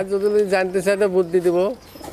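Domestic pigeons cooing close by: one long, drawn-out coo that stops about three quarters of the way through.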